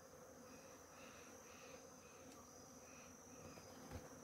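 Near silence: a faint, steady high-pitched insect sound, with a few faint short chirps in the first three seconds.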